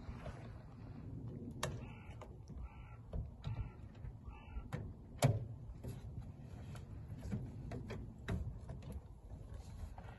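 Scattered knocks and clicks of a 1935 Ford V8 cabriolet's open door and folding fabric top being handled, with one sharp knock louder than the rest about five seconds in. A crow caws four times about two to four seconds in.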